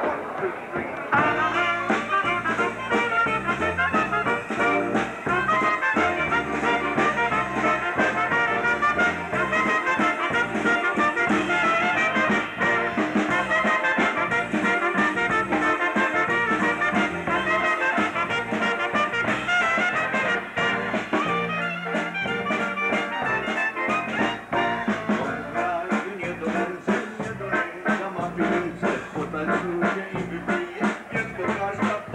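A live polka band strikes up a tune about a second in: trumpet leading over keyboard and drum kit, with a steady dance beat.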